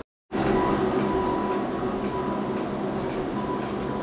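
Portable electric tire inflator running steadily, pumping up a scooter tire: an even motor-and-pump drone with a constant hum. It starts after a brief silent gap about a third of a second in.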